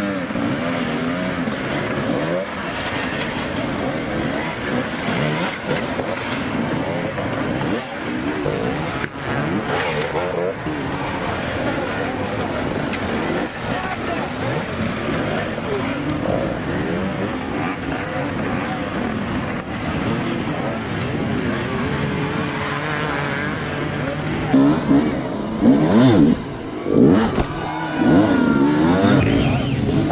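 Several enduro dirt bike engines revving, their pitch rising and falling with the throttle as the bikes pick through a rock section. Near the end, closer engines rev in louder short bursts.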